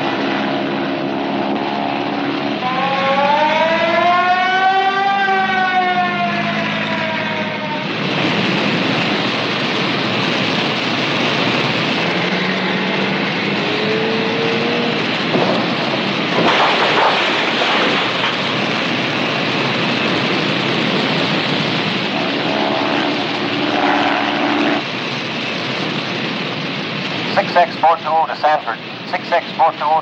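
A siren wails, rising and then falling, in the first few seconds. A steady rushing roar of forest fire follows and fills the rest, with shouted calls near the end.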